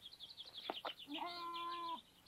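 Faint birdsong: a quick run of short, high chirps. From about a second in, a steady held pitched tone joins it and then cuts off abruptly.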